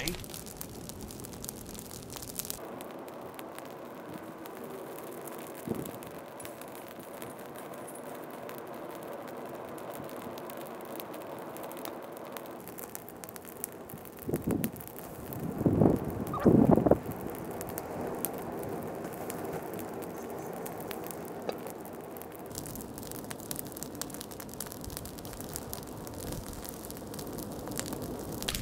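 A brush and branch fire in a fire pit crackling steadily with many small pops. A few loud short sounds come in a cluster about halfway through.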